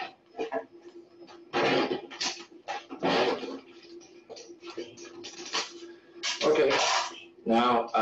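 A metal knife scraping around the inside wall of a metal springform cake pan to loosen a baked cake. The scrapes come in a series of short strokes, with a faint steady hum underneath.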